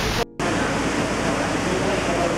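Steady loud rushing noise, like open-air ambience or wind on the microphone, with faint voices in it. It drops out briefly about a quarter second in, where the recording cuts.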